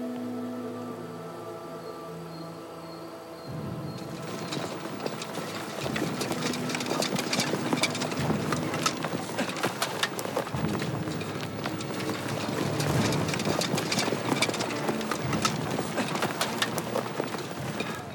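Soundtrack music with long held notes, then from about four seconds in many quick, overlapping footsteps and crunching of a column of soldiers walking through dry grass and brush, over the music.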